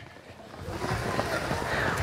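Outdoor background noise: a soft hiss that swells over about two seconds, with faint voices in the distance.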